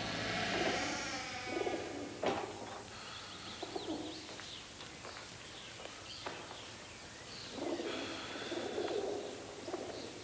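Birds cooing at intervals, with faint high chirps and two sharp knocks, about two and six seconds in.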